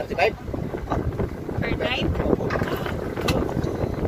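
Wind buffeting the microphone aboard a small open boat, an uneven low rumble throughout, with brief snatches of voices about two seconds in.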